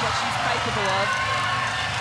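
Television commentary over a cheering crowd at a swimming race.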